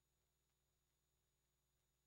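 Near silence, with only a faint steady electrical hum.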